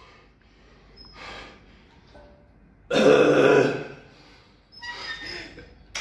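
A man's heavy, forceful breathing between deadlift reps: one loud exhale with a sudden start about three seconds in, and a shorter breath near the end.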